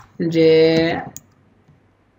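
A drawn-out spoken syllable, then a computer keyboard keystroke: one sharp click just after a second in, with fainter ticks after it.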